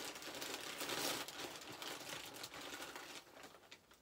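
Packaging crinkling and rustling as a parcel is opened and handled by hand, getting quieter toward the end.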